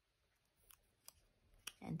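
A small paper tab being folded and creased by hand: a few faint ticks and rustles against near quiet, with a woman's voice starting near the end.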